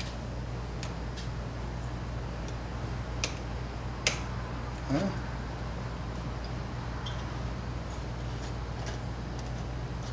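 Light metallic clicks and ticks of a VW bus carburetor's choke linkage and small parts being worked by hand, a handful of sharp ticks with the loudest about four seconds in, over a steady low hum.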